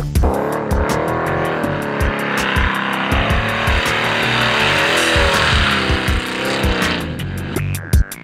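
A drift car's engine revving, its pitch rising and falling, with tyres squealing, laid over electronic music with a steady beat. The car sound cuts off about a second before the end, leaving only the music.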